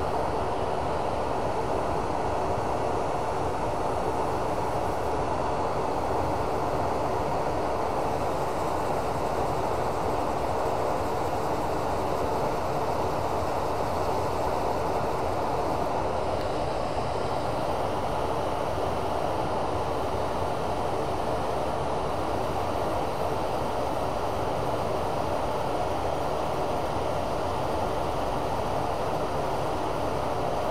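Wood lathe spinning a resin-cast blank at a steady speed, an even continuous whir with no changes, while sandpaper is held by hand against the turning resin.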